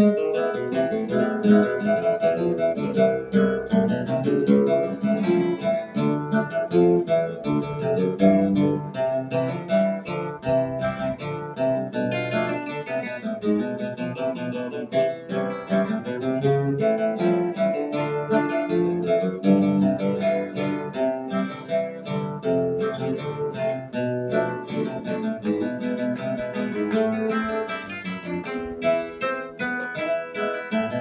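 Two classical guitars playing a hymn tune together, a continuous stream of plucked notes.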